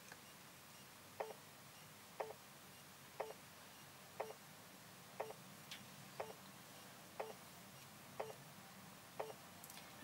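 A timepiece ticking faintly once a second, nine short ticks in a row, in a quiet room.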